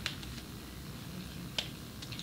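Two short, sharp clicks about a second and a half apart, over a low steady room hum.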